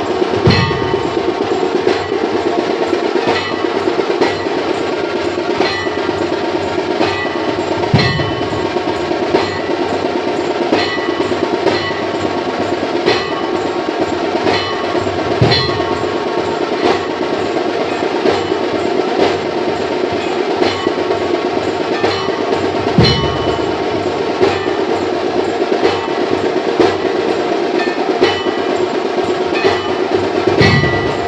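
Temple aarti percussion: bells and small metal cymbals struck in a steady, continuous rhythm, with a deep drum or gong stroke about every seven or eight seconds.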